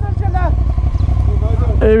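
Motorcycle engine idling with a steady low, pulsing rumble; a person laughs briefly at the start.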